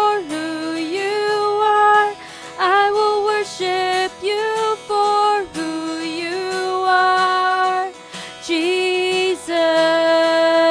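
Worship song: a singer holding long, sliding notes over instrumental accompaniment, with a long held note near the end.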